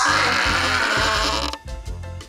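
Background music with a steady bass beat, over which a person gives a loud, rasping yell of strain while trying to lift a heavy barbell; the yell breaks off about a second and a half in.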